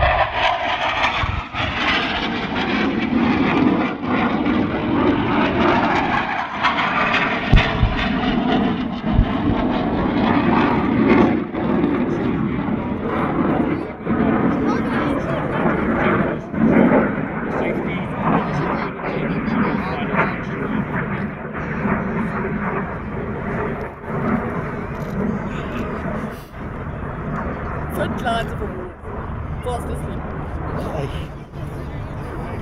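Aircraft engine noise from military aircraft flying over the airfield, with a held tone for the first several seconds. Two low thuds from simulated ground explosions come about seven and a half and nine seconds in.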